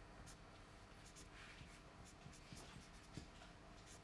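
Faint scratching strokes of a marker pen writing on a whiteboard.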